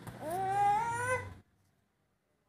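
A baby's drawn-out vocal cry, one pitched 'eee' that rises and then holds for just over a second. The sound then cuts off abruptly to silence.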